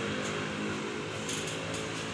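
A steady low mechanical hum made of several even, unchanging tones.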